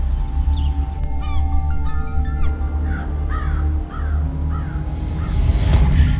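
Birds chirping in short, quick calls over soft background music and a steady low rumble, with a brief whoosh near the end.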